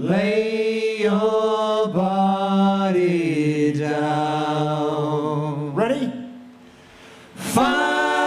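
A male vocal group singing in close harmony without accompaniment: long held chords that step and slide down in pitch. The chord fades to a hush about six seconds in, and the next comes in loudly near the end.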